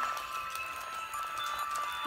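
Music of steady sustained high tones, playing through laptop speakers.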